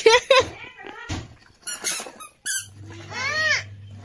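A baby squealing in short, high-pitched bursts, ending with a longer squeal that rises and falls in pitch. A woman says a brief word at the very start.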